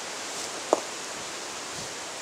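Steady, even outdoor background hiss with no speech, broken by a single short click a little under a second in.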